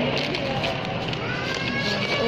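Supermarket checkout ambience: a steady hubbub of indistinct background voices and store noise.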